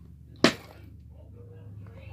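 A single sharp click or knock about half a second in, the loudest sound here, followed by faint handling noises, over a steady low hum.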